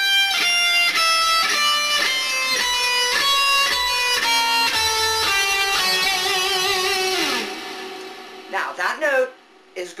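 Electric guitar playing a slow single-note warm-up exercise in half steps, six notes per pattern, at about three clear notes a second. About seven seconds in it ends on a held note with vibrato and slides down, then fades.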